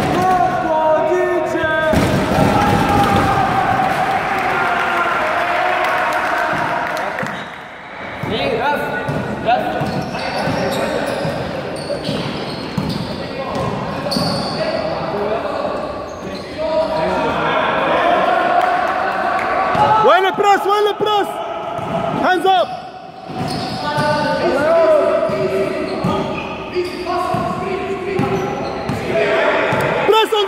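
A basketball being dribbled and bouncing on an indoor court, with players' voices echoing in the gym. Sharp squeaks of sneakers on the court come about twenty seconds in.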